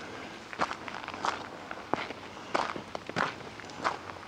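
A hiker's footsteps on a dry dirt forest trail strewn with leaf litter, at a steady walking pace of about one and a half steps a second.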